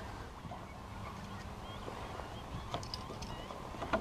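Low, steady rumble of wind and water on open water, with a few faint, short bird chirps in the second half.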